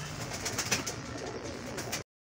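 Domestic high-flyer pigeons cooing low in a loft, with a few short sharp taps about halfway through.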